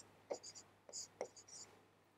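Stylus scratching on a tablet screen while handwriting, in a few short faint strokes that stop shortly before the end.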